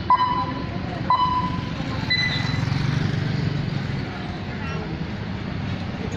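Radio time-signal pips over a public loudspeaker: short beeps about once a second, then a higher, longer tone about two seconds in. They mark the hour just before the national anthem broadcast. Steady street noise with traffic runs underneath.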